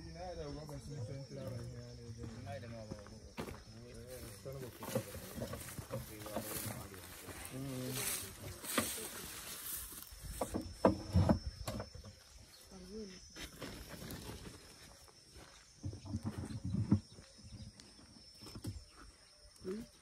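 Faint voices heard at a distance over quiet outdoor ambience, with a few sharp knocks partway through.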